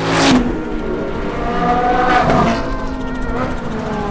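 Sports cars passing at speed on a racetrack: a close, loud rush right at the start, then an engine note that rises and falls as a car goes by about two seconds in.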